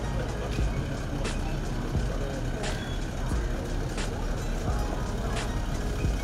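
Background music with a steady beat and a low, continuous bass.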